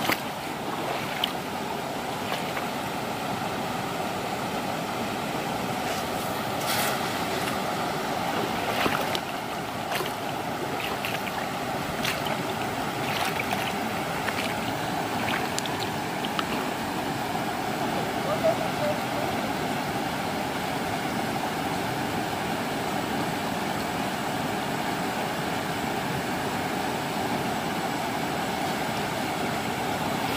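Shallow rocky stream rushing steadily over riffles, with a few short splashes and knocks as someone wades through the current.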